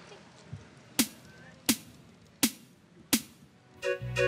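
Four sharp drum hits with a deep thump, evenly spaced about three-quarters of a second apart, starting about a second in, like a count-in before a song.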